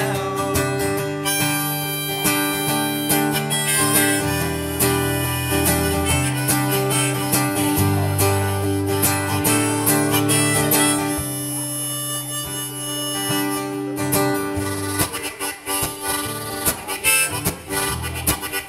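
Harmonica in a neck rack playing a solo over strummed acoustic guitar: an instrumental break between sung choruses of a country-folk song.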